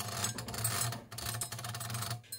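Mettler TM15's servo-driven mechanical counter readout running: its small stepper motor and gear train make a fast stream of fine ticks over a steady low hum as the digit drums advance to follow the rising temperature of the PT100 sensor.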